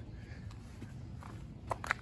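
Quiet steady low background rumble, with two short clicks close together near the end.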